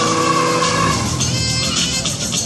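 Ford Falcon's engine running under load with tyres squealing in a burnout at a drag-strip start line; the squeal fades about a second in. Background music plays along.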